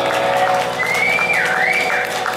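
Live rock band playing with held chords ringing, over crowd noise and cheering. About a second in, a high whistle slides up, dips and rises again.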